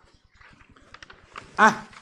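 A man's voice pausing, with a few faint clicks, then one short spoken syllable, an 'ah', near the end.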